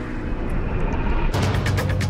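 Ferrari 488 Pista's twin-turbo V8 running low under background music. A fast, steady percussive beat comes in about a second and a half in.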